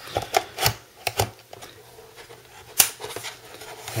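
Plastic and metal clicks and knocks of a hard drive tray being pushed into an aluminium Icy Dock enclosure and its hinged front lever pressed shut. There are several sharp clicks in the first second or so and a louder single click near three seconds in.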